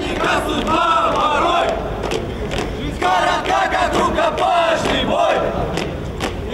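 A marching column of young male cadets singing a marching song loudly in unison, with their boots striking the pavement in step.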